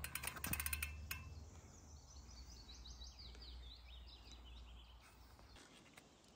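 A bicycle's rear freehub ticking rapidly for about a second as the wheel is spun by hand to hunt for a puncture. Then a songbird sings a short run of notes that fall in pitch.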